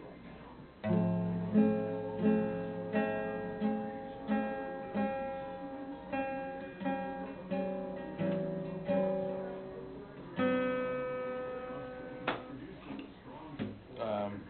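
Acoustic guitar played in a slow run of plucked chords, one about every 0.7 seconds, starting about a second in. After a brief pause, one last chord rings out, followed by a sharp click near the end.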